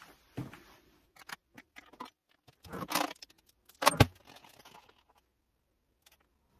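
Kitchen clatter: a spoon knocking and scraping in a slow cooker's crock while the sauce ingredients are mixed. It is a string of sharp knocks and scrapes, the loudest about four seconds in.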